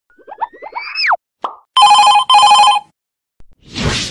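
Cartoon intro sound effects: a whistle-like slide that rises and then drops sharply, a short plop, then a telephone ringing twice in quick trilling bursts, and a whoosh near the end.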